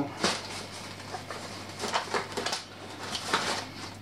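Plastic grocery bag and food packaging rustling and crinkling in irregular short bursts as items are handled and taken out, over a steady low hum.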